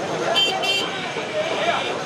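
Two short toots of a vehicle horn, one right after the other about half a second in, over a crowd talking.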